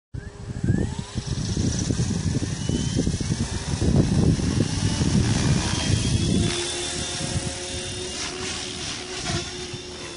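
Stretched MSHeli Protos electric RC helicopter spinning its main and tail rotors at about 2300 rpm head speed, with a whine that rises in the first second as it lifts off. A heavy low rumble runs for the first six seconds or so, then the sound thins to a steadier whine as the helicopter climbs away.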